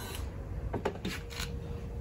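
A few light clicks and knocks of a small plastic water pump and sprayer nozzle being lifted out of a bucket and set down, clustered around the middle.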